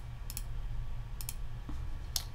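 Two quick double clicks of a computer mouse about a second apart, over a low steady hum.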